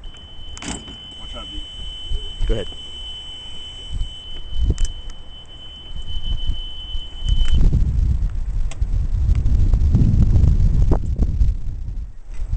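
A steady, high-pitched electronic tone sounds for about seven and a half seconds, then cuts off. Loud low rumbling of wind and handling on the microphone follows.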